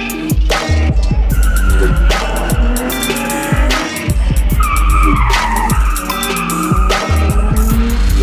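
Nissan 350Z's tyres squealing as the car slides sideways, a wavering squeal from about a second in until past halfway. It sits over loud music with a heavy bass beat and drum hits.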